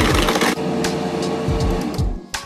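Bosch blender crushing ice cubes in a lime, water and condensed-milk mix: a loud crunching burst in the first half-second, then a steady motor hum as the blades spin.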